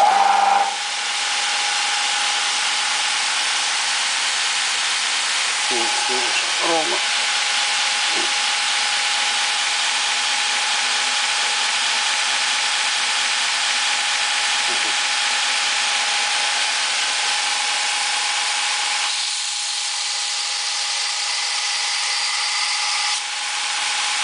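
Homemade belt grinder switched on: its electric motor and abrasive belt surge up as it starts, then run steadily with a hiss and a single steady whine. The sound dips a little for a few seconds near the end.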